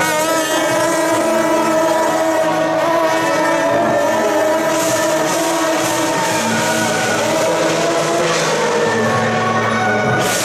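Several long straight brass procession horns blowing sustained, steady held notes together, with brass hand cymbals adding a hiss in the second half.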